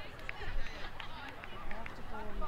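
Distant voices of players and spectators calling out across an open field, with wind rumbling on the microphone.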